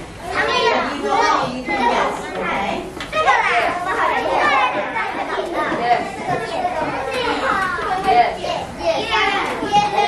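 Many children's voices talking and calling out at once, a steady overlapping classroom chatter with no single voice standing out.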